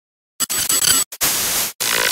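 Harsh digital static glitch sound effect, cutting in about half a second in and running in choppy bursts broken by brief dropouts.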